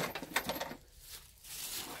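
A few light metallic clicks and rattles of padlocks being handled and set down, mostly in the first half-second.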